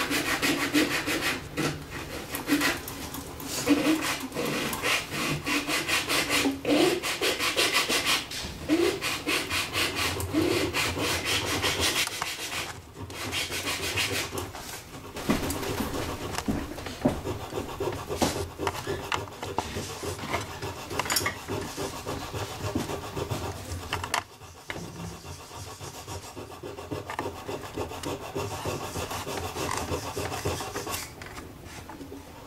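A small glue brush scrubbing against the spruce top of an old violin, working glue into an open crack: a dense, fast scratchy rubbing on wood. It breaks off briefly about halfway and is quieter and sparser in the last few seconds.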